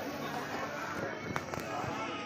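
Background voices of people chattering, no one speaking up close. Two short, sharp clicks come about a second and a half in.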